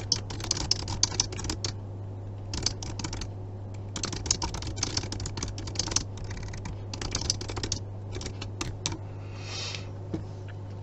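Typing on a computer keyboard: quick runs of key clicks in several bursts with short pauses between them as a sentence is typed out.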